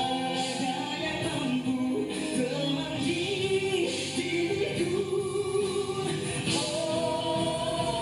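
A male and a female singer performing a slow ballad duet with band accompaniment, playing back from a concert recording.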